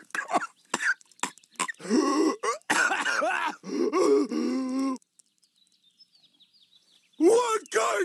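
Patrick Star's cartoon voice making wordless groans, grunts and throat noises for about five seconds. Then comes a pause of near silence with a few faint high chirps, and the voice starts again near the end.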